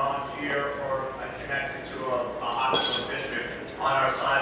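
A glass clinks once with a short, bright ring about three seconds in, over people talking.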